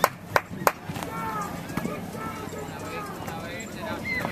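Spectators clapping in a steady rhythm, about three sharp claps a second, that stops about a second in; faint crowd voices follow.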